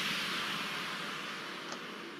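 Noisy tail of an explosion sound effect, a broad hiss-like rush fading steadily away with no music under it.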